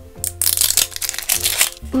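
Plastic wrapper crinkling and tearing as it is stripped off a Littlest Pet Shop Fashems blind capsule, a dense, irregular crackle for about a second and a half.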